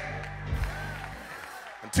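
Low held musical chord, like an organ backing the sermon, fading out after about a second, with a soft low thump about half a second in.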